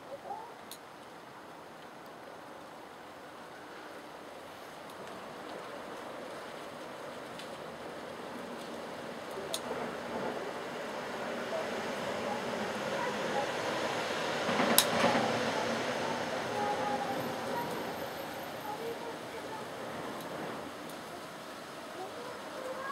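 A rushing noise that slowly swells to a peak about fifteen seconds in and then fades, with a sharp click at its loudest point and faint distant voices.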